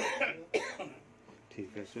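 A person coughing twice, about half a second apart, the first cough the louder.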